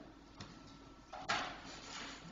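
Quiet meeting-room tone with a faint click about half a second in, then a brief rustling noise a little past one second.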